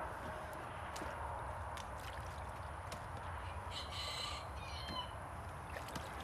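Quiet outdoor background with a few faint clicks as long water lily stems are handled in a small boat on a pond, and one short, high bird call about four seconds in.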